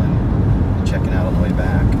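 Road and engine noise of a moving car heard from inside the cabin, a steady low rumble, with a faint voice partway through.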